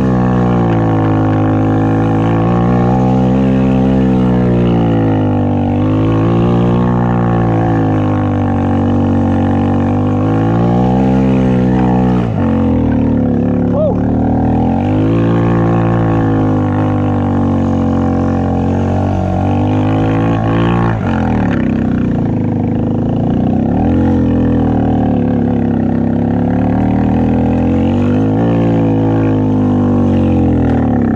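ATV engine on a snow quad with front skis, revving up and down again and again as it is ridden through snow, with sharp drops in revs about twelve seconds in and again around twenty-one seconds.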